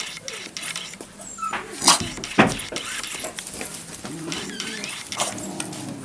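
A dog getting on and off an inflatable rubber exercise ball on a tile floor, with scuffs and clicks and two sharp knocks about two seconds in. It gives a few high whimpers near the end.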